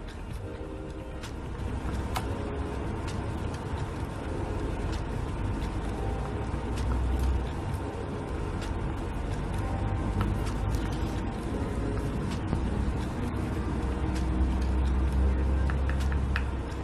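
Metal spoon stirring thick melted chocolate in a small glass jar, with scattered light clicks of the spoon against the glass. Underneath are a steady low rumble that swells twice and faint background music.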